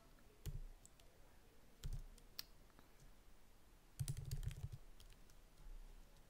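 Keystrokes on a computer keyboard: a few separate key presses, then a quicker run of several keys about four seconds in, as a word is typed.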